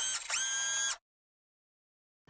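Short electronic sound effect: a quick upward glide into a bright, steady tone that lasts under a second and cuts off suddenly.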